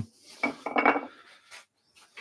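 Handling clatter of wooden turning blanks knocking against each other as one square handle blank is picked out of a selection: a short cluster of knocks about half a second in, then fainter rustling.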